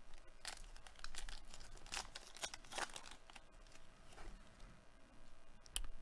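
Trading card pack wrapper being torn open and handled, crinkling in a quick run of irregular crackles through the first few seconds, then only a few scattered clicks.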